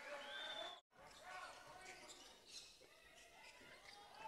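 Near silence: faint basketball court sounds from the game in play, with a brief total dropout about a second in.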